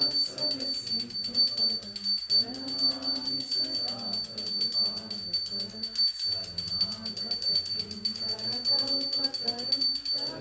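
Devotional arati kirtan: voices singing a chant to a steady jangling of hand cymbals (kartals), with a steady high ringing tone over it. The singing breaks briefly between phrases about two seconds in and again about six seconds in.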